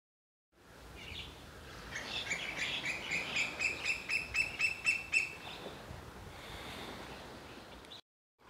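A bird calling a rapid series of short chirps, about four a second, growing louder for a few seconds and then stopping, over steady background noise.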